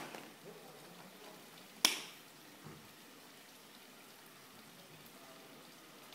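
Sharp clicks over a faint steady hiss: one right at the start, a louder one about two seconds in, and a faint one shortly after.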